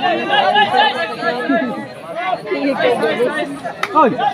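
Crowd of spectators chattering, many voices talking over one another, with one sharp click just before the end.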